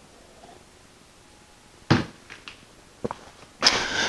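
A man taking a drink from a glass mug, close to a lapel mic, against quiet room tone. About two seconds in there is a short breathy exhale after the sip, then a few soft clicks, and a breath near the end.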